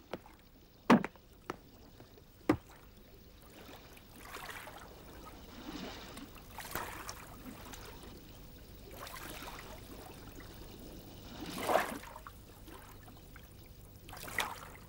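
Crates knocked down into a wooden rowboat, three sharp thuds in the first few seconds. Then oars swishing through the water in slow strokes as the rowboat is rowed along.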